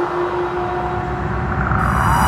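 Electronic psytrance music in a breakdown without the kick drum. A held synth tone jumps higher about a third of the way in, over a fast, ratchet-like clicking pulse in the bass, with falling synth sweeps near the end.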